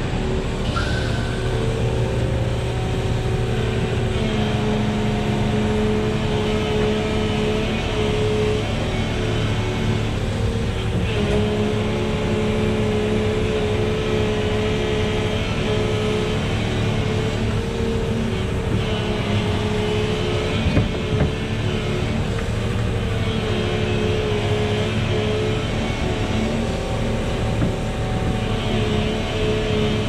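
Volvo EC380E excavator's diesel engine and hydraulics working under load as the machine digs and swings, the engine note shifting as the load changes. One short knock comes about two-thirds of the way through.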